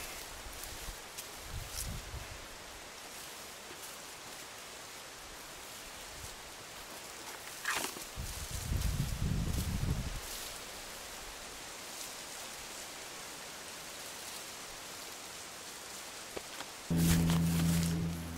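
Hands scraping and rummaging through loose soil among grass and leaves, soft and intermittent over a steady outdoor background, with a louder spell of handling about eight to ten seconds in. Near the end a steady low hum starts suddenly.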